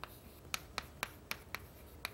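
Chalk writing on a chalkboard: a quick run of sharp taps, about four a second, as the chalk strikes the board to form the characters of an equation.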